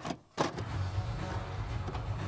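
Retro video-tape stop-and-play glitch effect: a few sharp clicks and a brief drop to near silence, then a low steady hum begins about half a second in, with quiet music under it.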